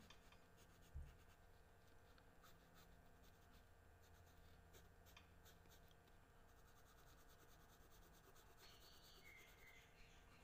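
Very faint scratching and rubbing of a pencil drawing on paper, with a single soft knock about a second in.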